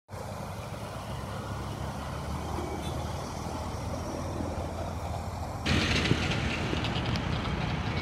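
Motor vehicle engines and traffic: a steady low rumble that suddenly grows louder and brighter about two-thirds of the way through.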